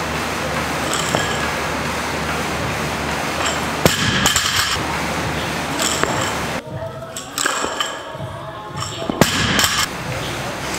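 Several sharp metal clinks and knocks from a loaded barbell, plates and collars rattling as it is lifted and set down for squat snatches, over a steady noisy background.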